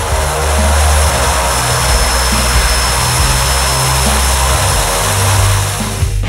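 Quest Kodiak single-engine turboprop running on the ground: a steady, loud propeller and engine roar with a high turbine whine held at one pitch.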